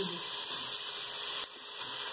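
Chopped onion sizzling in hot oil in a pot as raw ground beef is dropped in: a steady hiss that drops in level about one and a half seconds in.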